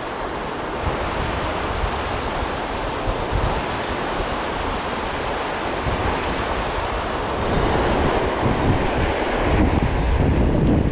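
Surf washing onto the beach with strong wind buffeting the microphone in a low rumble; it grows louder about seven and a half seconds in.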